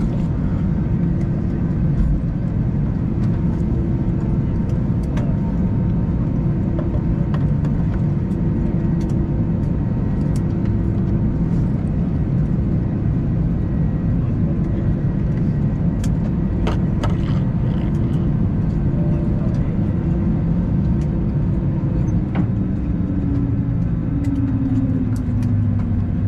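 Steady rumble of an Airbus A320's CFM56 turbofans at taxi idle, heard from inside the cabin, with a low steady hum over it. Near the end a tone slides down in pitch.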